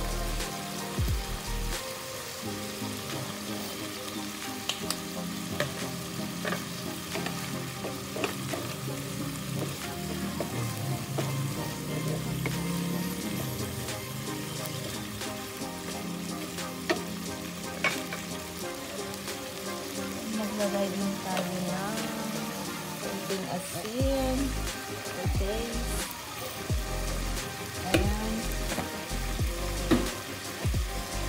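A chopped tomato and onion mixture sizzling in a nonstick frying pan, stirred and scraped with a wooden spatula, with scattered ticks and knocks from the spatula against the pan.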